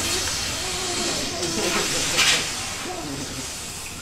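A young woman whimpering on the edge of tears: a breathy, wavering cry with a sharper sobbing breath a little over two seconds in.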